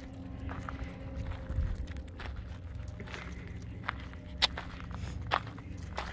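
Footsteps on a dirt desert trail, with an uneven low rumble and a few sharp clicks, the clearest two about four and a half and five and a half seconds in.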